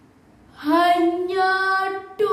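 A girl's voice drawing out one long, sung-like note in a dramatic poetry recitation, starting about half a second in and rising slightly in pitch.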